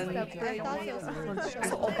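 Overlapping speech: several people talking at once.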